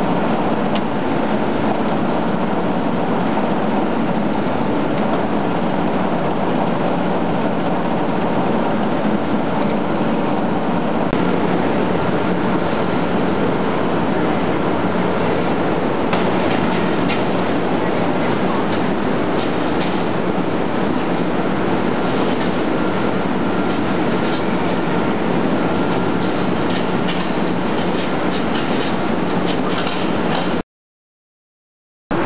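Steady din of tannery machinery with a constant low hum. From about halfway there are frequent short clicks and clatter.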